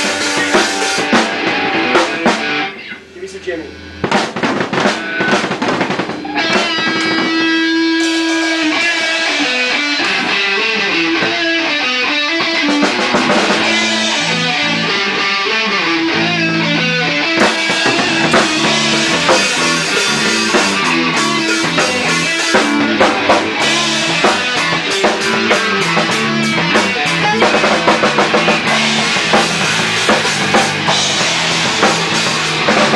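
A rock band playing live in a garage rehearsal: drum kit, electric guitar and bass. The band drops out briefly about three seconds in, then comes back in and plays on.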